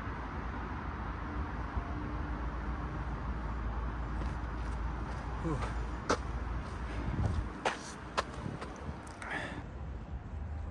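Steady low outdoor rumble. About halfway through, a man lets out a falling 'ooh' after hanging from a pull-up bar. A few sharp clicks and knocks follow over the next couple of seconds.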